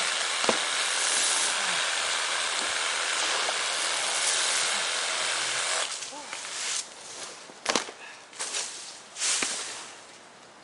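A large sheet of EPDM rubber roofing dragged across OSB roof decking: a steady, rough scraping rustle for about six seconds, then a few shorter tugs and a sharp snap about eight seconds in.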